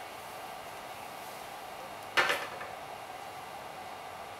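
A single sharp knock about two seconds in as a wooden dowel is handled and knocks against something, ringing briefly, over a steady faint room hiss.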